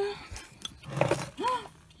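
A woman's voice making short wordless sounds, the second a single rising-and-falling coo, with a few faint clicks.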